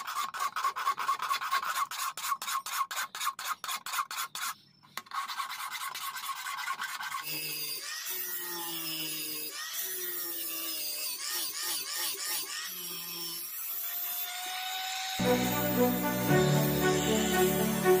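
Hand file rasping back and forth across a steel knife blade, about four strokes a second, with a short break a little after four seconds.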